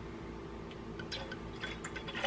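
Liquid poured from a glass bottle into a metal cocktail shaker. It is faint, with a few light drips and ticks in the second half.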